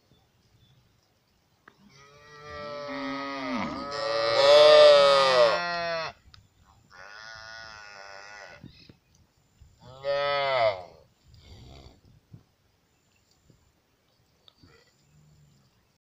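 Several calves mooing, their calls overlapping in a long bout in the first half, loudest in the middle of it, then three shorter single calls with pauses between.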